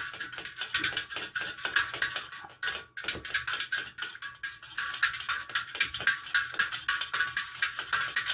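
A nail stirring a watery black paint wash in a cut-open metal can: rapid, steady clinking and scraping of the nail against the can's sides, with the thin metal can ringing.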